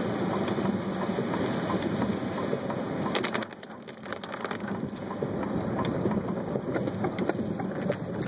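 Heavy rain on the car and tyres hissing through standing water on a flooded road, heard from inside the moving car. About three and a half seconds in, the noise drops sharply, leaving scattered taps of raindrops.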